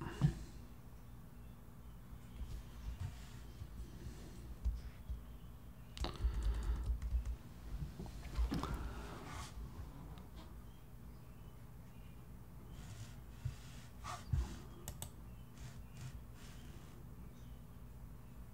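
Faint, scattered clicks from a computer keyboard and mouse, a few at a time, with a few low bumps in the first half.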